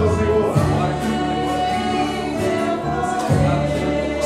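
A group of voices singing a slow Portuguese hymn, accompanied by keyboard and acoustic guitar, with sustained bass notes underneath.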